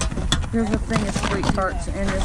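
Quick, irregular knocks and clatter of boxed toys and other items being handled and shifted in a plastic bin, over a low rumble.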